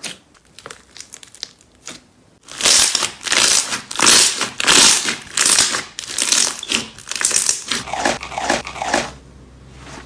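Glossy slime squeezed and kneaded by hand: first scattered small pops, then about a second in, wet crackling and popping of trapped air in repeated squeezes roughly every two thirds of a second, dying away near the end.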